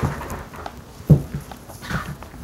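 A person getting up from an office chair and moving away: clothing rustle and a few soft thumps and knocks, the loudest a little past a second in.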